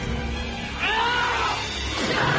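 A woman's cry, rising then falling in pitch, starting about a second in and lasting nearly a second, over background film score music.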